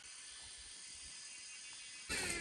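Faint, steady high-pitched buzz of insects, an even drone with no breaks.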